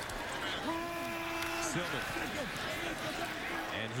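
Stadium crowd noise during a football play, with shouting voices rising out of it, one of them a long held shout about a second in.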